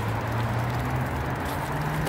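Steady road traffic noise, with a vehicle's engine hum that rises slightly in pitch about one and a half seconds in.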